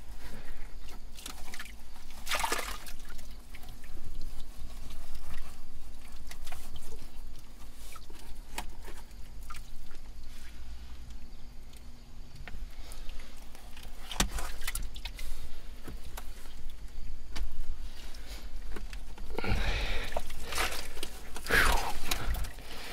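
Gloved hands digging by hand through wet mud and standing water at the bottom of an old privy pit, with scattered scrapes and knocks. A longer stretch of scraping comes shortly before the end, as a salt-glazed stoneware crock is worked loose from the muck.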